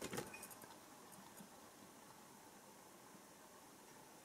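Near silence: room tone, with a brief cluster of faint clicks and a rustle in the first half-second from handling the test setup.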